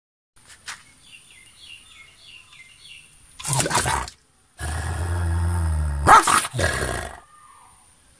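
German Shepherd-type guard dog snarling from inside its cage: a loud bark about three and a half seconds in, a low steady growl for over a second, then two more barks in quick succession. Faint bird chirps before the first bark.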